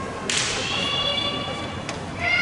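A naginata performer's kiai: a sharp, high-pitched shout that starts with a burst of noise about a quarter second in and is held for over a second. A short sharp knock comes near the end.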